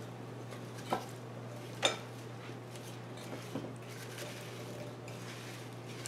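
Silicone spatula knocking against a glass mixing bowl as chopped apples are tossed in sugar and cinnamon: two clear knocks about a second apart, then a few fainter ones, over a steady low hum.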